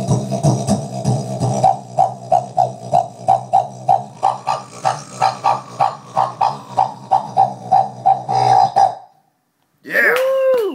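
Didjboxing: a didgeridoo-like drone made with the mouth and cupped hands, pulsed in an even beat of about three strokes a second, miked straight into a bass amp with no effects. It stops abruptly about nine seconds in.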